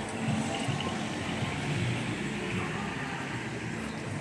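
Steady town street background: a low hum of traffic and general street noise, with no single sound standing out.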